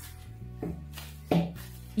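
Quiet background music with held low notes. A faint knock comes about half a second in and a louder short metallic knock about a second and a half in, from the flywheel lock tool being loosened on the engine's flywheel.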